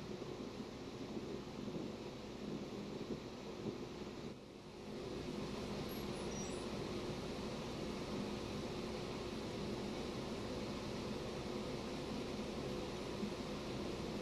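Steady room noise: the hum and hiss of a running ventilation fan, with a brief dip about four and a half seconds in.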